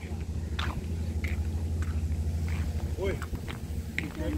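Footsteps on brick paving, soft knocks about every half second, over a steady low rumble; a brief voice call comes near the end.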